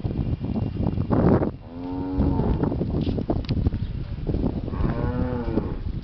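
An animal calling twice, each call drawn out for a little under a second, about three seconds apart, over a constant low rumble. A loud noisy burst comes about a second in, just before the first call.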